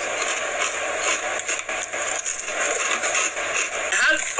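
Someone chewing crunchy Funyuns onion-flavour snack rings: an irregular, crackling crunch.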